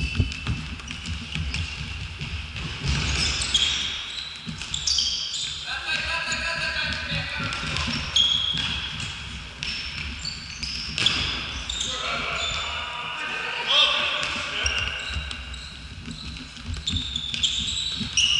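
Indoor futsal play: shoes squeaking on the hall floor, the ball being kicked and bouncing, and players shouting, all echoing in the large hall.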